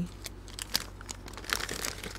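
Packaging crinkling and rustling as small plastic sample bags and paper bags are handled: scattered crackles, denser about a second and a half in.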